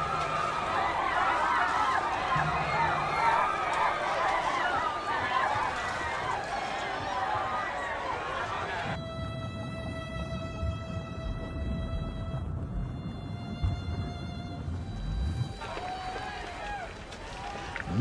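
Many overlapping voices screaming and wailing at once. About nine seconds in they give way to a steady held tone with a low rumble underneath, which stops shortly before the end.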